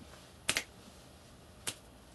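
Two finger snaps, a sharp one about half a second in and a fainter one a little over a second later.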